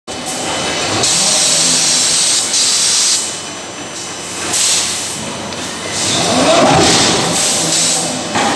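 Loud hissing bursts at a 630-ton electric screw forging press, each lasting a second or two: one at about a second in, a short one near the middle, and a longer one in the last two seconds. A low machine hum runs underneath.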